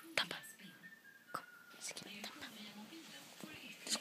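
A soft, whispered voice saying one word, then quiet with a few faint clicks and rustles.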